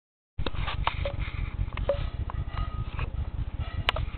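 A baby exersaucer's plastic toys clicking and knocking as they are handled, with a few brief squeaks and a sharper knock near the end, over a steady low rumble.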